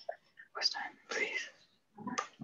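Quiet, whispery speech: two short stretches of indistinct words about half a second and a second in.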